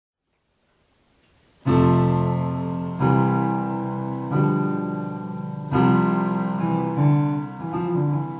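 Electric stage piano playing a slow introduction: after a moment of silence, five full chords struck about every second and a half, each left to ring and fade.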